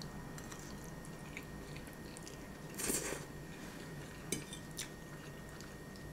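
Close-up eating sounds: chewing a mouthful of spaghetti, with a short louder mouth noise about halfway through. Later come a few light clicks of a metal fork against the plate.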